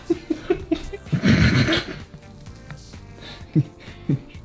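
A man laughing in short rapid bursts, loudest about a second in, over quiet background music.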